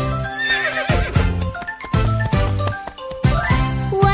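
Children's song backing music with a horse whinny sound effect in the first second.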